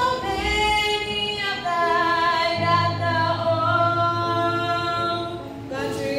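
A youth choir of boys and girls singing a cappella in parts, on long held notes. A lower voice part comes in about two and a half seconds in, and the phrase ends with a short breath just before a new one begins.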